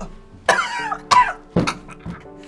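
A person coughing hard three times, about half a second apart, over background music with held notes.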